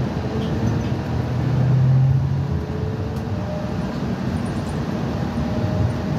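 Cabin noise inside a moving shuttle: steady engine and road rumble, with a low engine note that swells about two seconds in and faint rising whines above it.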